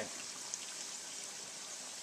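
Smoked sausage and sweet potato pieces deep-frying in a saucepan of hot oil: a steady bubbling sizzle, with a light click about a quarter of the way in.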